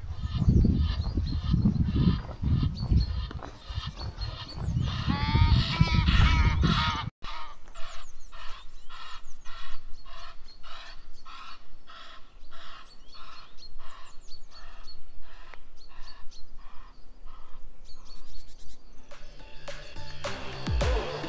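Geese honking repeatedly, short calls about two a second. In the first seven seconds wind buffets the microphone with a low rumble.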